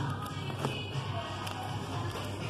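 Background music in a shop, with soft taps and shuffling from vinyl LP sleeves being flipped through in a record bin.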